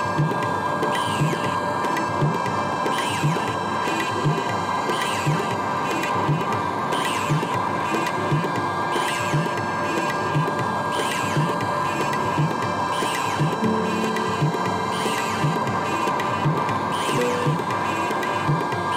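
Looped electronic ambient music from synthesizers: a steady drone with a low pulse and a falling high sweep repeating about once a second. Longer held low notes join about three-quarters of the way through.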